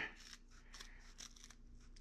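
Scissors snipping through a plastic Scotch-Brite scouring pad: a series of faint, crisp cuts.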